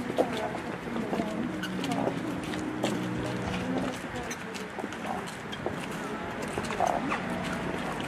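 Footsteps on a pavement, with low murmured voices and a few faint held tones that fade out about halfway through.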